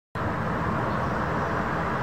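City street traffic noise: a steady hum of passing road vehicles, after a split-second silent gap at the very start.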